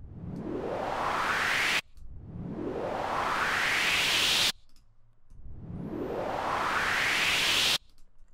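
Synthesized riser effect from Serum: a noisy sweep that climbs in pitch and grows louder, played three times, each cutting off suddenly. A sawtooth oscillator, its pitch and volume jumping at random, gives it a random noisy texture.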